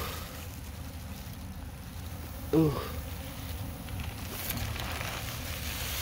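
A man's short groaning 'ooh' of disgust, falling in pitch, about two and a half seconds in, over a steady low outdoor rumble.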